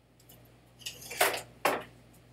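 Objects being handled off-microphone: two short clattering knocks, the second about half a second after the first.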